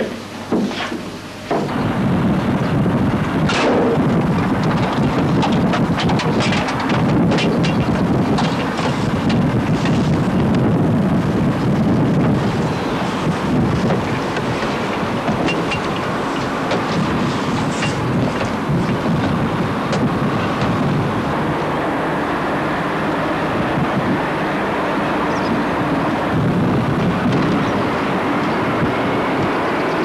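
Wind buffeting a camcorder microphone at an open bell-tower opening: a loud, steady rumbling rush that starts about a second and a half in, with scattered clicks over the first ten seconds or so.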